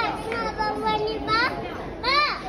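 A young child's voice: a few short, high-pitched squeals that sweep up in pitch, with some lower voice sounds between them.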